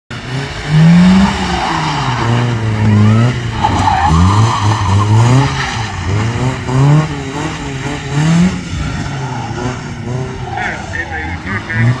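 Competition car's engine revved hard and dropping back again and again as it is flung through tight autotest manoeuvres, with tyres squealing and skidding.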